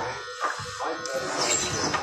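Background music with a steady backing and sung-sounding lines, and a brief hissing noise about one and a half seconds in.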